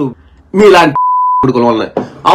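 A steady single-pitch censor bleep, about half a second long, cutting into a man's heated speech in the middle of a word-run: the broadcast bleeping out an abusive word.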